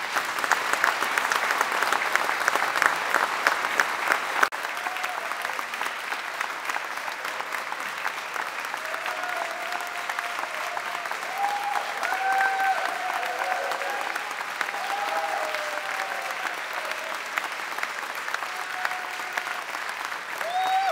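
A crowd applauding, the clapping loudest in the first few seconds; an abrupt cut about four and a half seconds in, after which the clapping goes on a little quieter with a few short held tones over it.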